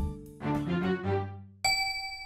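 A short phrase of children's background music ending on a held low note. About one and a half seconds in, a single bright bell-like ding starts and rings on, fading slowly: a logo sound sting.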